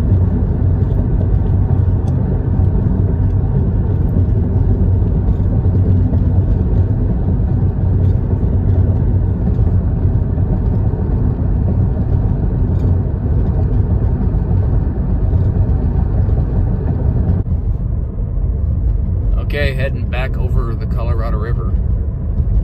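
Steady low road and engine rumble of a car driving along a highway, heard from inside the cabin. The rumble changes in tone about three-quarters of the way through.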